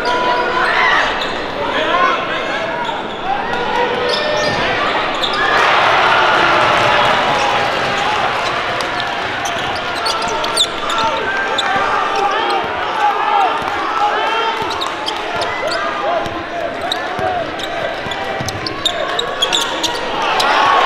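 Live basketball game sound in a gym: the ball bouncing on the hardwood court amid a steady mix of crowd and player voices echoing in the hall.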